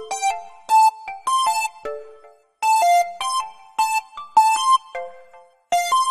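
A software synth melody playing on its own: a run of short, bright, quickly fading notes that loops about every three seconds, with no drums.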